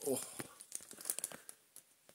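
Thin plastic packaging bag crinkling as it is handled, a quick run of crackles over the first second and a half.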